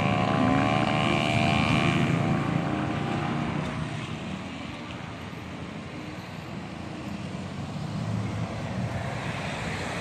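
A vehicle engine hum whose pitch slowly drops as it fades over the first few seconds, leaving road traffic noise that grows louder again near the end.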